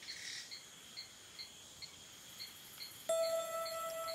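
Soundtrack of cricket-like chirping, about two pulses a second over a thin steady high whine, with a soft shimmering swell at the start. About three seconds in, a single bell-like chime note is struck and rings on.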